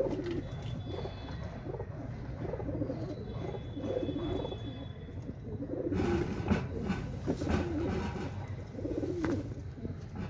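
Domestic pigeons cooing over and over, several birds overlapping. From about six seconds in, a louder stretch of rustling and sharp clicks mixes with the coos for a couple of seconds.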